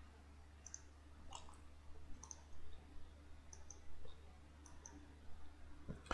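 Faint computer mouse clicks, about six single clicks spaced irregularly a second or so apart, over a low steady hum.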